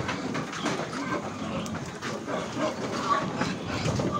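Pigs shifting about inside a metal livestock truck: a continuous, dense rattling and clattering of hooves on the metal deck and of the barred gates.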